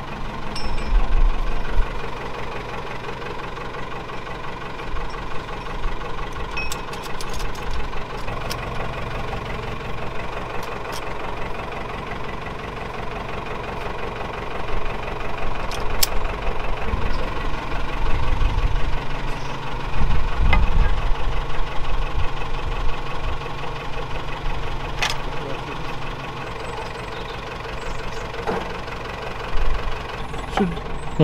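A diesel engine idling steadily, getting louder for a few seconds in the middle. A couple of sharp metal clinks come through over it.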